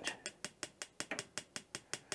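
Electronic spark igniter of a Mr. Heater Buddy Flex propane heater clicking steadily, about five or six sharp clicks a second, while the pilot button is held down and the pilot has not yet caught.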